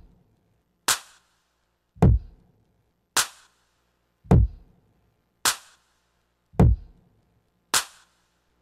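Electronic drum loop from the Novation Launchpad iPad app's Chillstep pack playing on its own: a slow, sparse half-time beat, a deep kick drum alternating with a sharp, bright snare-type hit about once a second.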